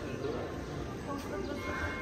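Busy pedestrian street: murmur of distant voices of passers-by with a few faint footsteps on cobblestones.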